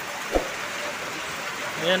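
Heavy rain falling steadily, an even hiss, with a brief thump about a third of a second in.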